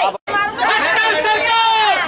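A crowd of protesters shouting a slogan together, many voices at once in long, high-pitched drawn-out calls. The sound cuts out completely for a moment just after the start.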